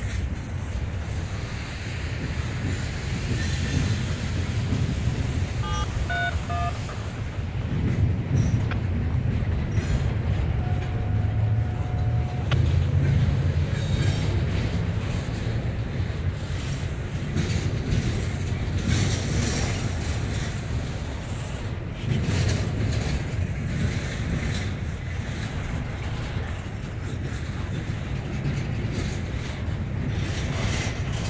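Freight train of intermodal well cars loaded with double-stacked containers rolling past at a steady speed: a continuous low rumble with the clickety-clack of wheels over the rails.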